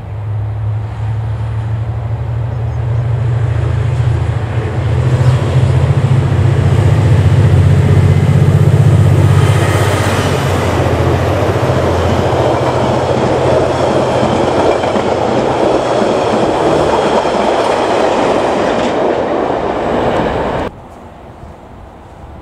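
KiwiRail DFB-class diesel locomotives droning as a train approaches, the engine note building and then fading. A passing electric multiple unit's wheels then rumble and clatter along the rails. The sound cuts off suddenly near the end.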